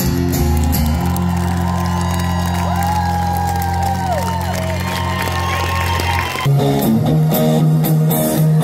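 Live band music through a festival PA: a held low chord with sliding sustained notes above it, then, about six seconds in, a louder rhythmic guitar strumming part kicks in.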